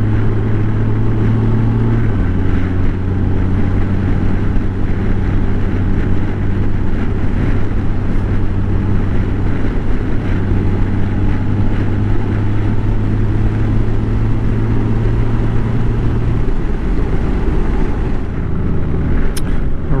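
Honda Gold Wing's flat-six engine running steadily at road speed, mixed with wind rush. The engine note drops a step about two seconds in and again near the end, as the bike nears a junction.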